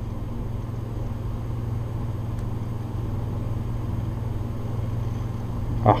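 Steady low background hum with a faint hiss, unchanging throughout.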